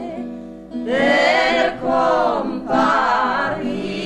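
A folk choir singing a traditional Piedmontese rice-weeders' (mondine) song. The singing thins briefly near the start, then a new phrase begins about a second in.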